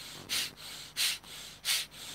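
Bhastrika pranayama (bellows breath): forceful, rhythmic breathing in and out through both nostrils. There are three short, loud breath pulses with a softer, longer breath between each.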